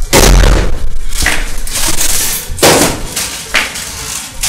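A series of loud, sudden impacts, four heavy hits roughly a second apart, each ringing on briefly.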